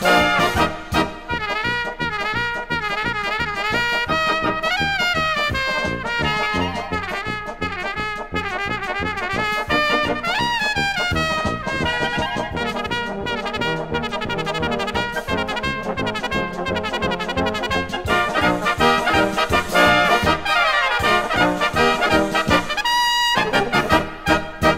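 Czech brass band (dechovka) playing an instrumental passage: trumpets and trombones carry the melody over a steady oom-pah bass beat.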